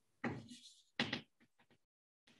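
Chalk writing on a blackboard: two sharp chalk strokes about a quarter second and a second in, followed by a few quick light taps as the letters are formed.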